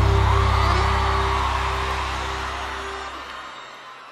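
The final chord of a live sertanejo band rings out and fades away steadily, with an audience whooping and cheering over it.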